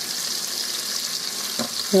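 Onion and celery sizzling in hot oil and beef drippings in the pot of an electric pressure cooker: a steady high hiss of frying.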